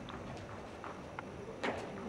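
Horse's hoofbeats on the sand footing of a riding arena: soft, short thuds in an even beat a little over two a second.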